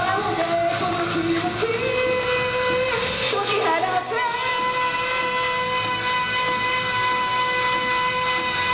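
Japanese idol pop song: a girls' group singing to backing music. About four seconds in, the melody settles on one long steady note.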